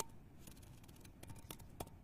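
A few faint, irregular clicks of a computer mouse as someone searches on a computer, with a small cluster of clicks over the last second.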